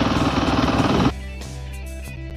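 KTM dirt bike engine running as the bike rides along, cut off abruptly about a second in by background music.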